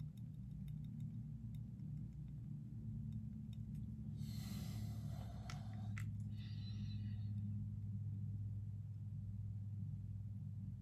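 Faint steady low hum, with a brief rustle and two light clicks about four to six seconds in, then a short higher-pitched rasp, as small dental hand instruments are handled over a model.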